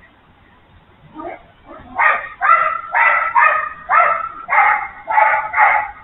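Red fox calling in a rapid series of loud, high yelping calls, about two a second, after a few fainter calls about a second in. These are typical of foxes squabbling over food.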